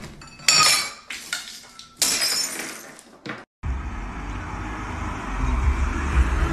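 Glass and dishes crashing and shattering, with two loud crashes about half a second and two seconds in, each followed by clinking and rattling. A little past the middle it cuts off abruptly, and a steady low rumble follows.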